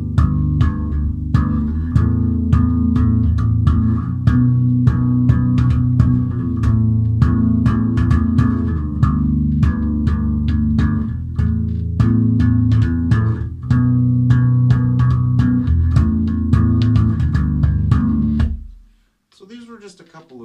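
Electric bass guitar played with thumb-slap technique, sounding full chords with many sharp slaps and pops over a sustained low chordal sound. The playing stops about a second and a half before the end.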